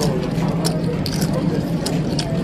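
Live poker-room sound: a person laughing amid background table chatter, with a few sharp clicks.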